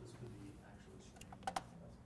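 Clicking at a computer: a few light clicks, then two sharp clicks close together about one and a half seconds in.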